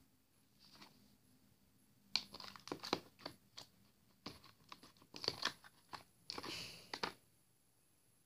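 Mushy, jiggly slime from inside a squishy mesh ball being squeezed and pulled by hand in a plastic tub: irregular sticky clicks and crackles in short clusters, stopping about seven seconds in.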